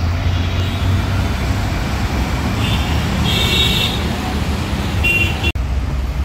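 Steady road traffic rumble from cars and buses on a busy city road, with a brief high-pitched tone a little past three seconds in.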